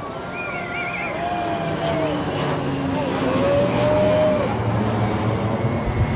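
Jet engine rumble from a formation of F-16 fighters flying overhead, growing louder to a peak about four seconds in and sinking in pitch as the jets pass. Crowd voices and whoops ride over it.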